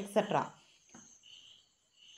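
The end of a spoken word, then faint high-pitched insect chirping in short patches, a cricket in the background.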